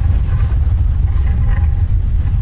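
Loud, steady deep rumble from an animated intro's soundtrack, with a faint steady high tone held above it.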